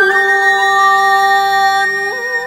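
A singer holds one long, steady note at the end of a phrase in a Vietnamese ví giặm-style folk song, over instrumental accompaniment.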